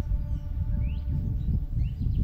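Low, unsteady rumble of wind on the microphone, with a few short, rising bird chirps about a second in and near the end.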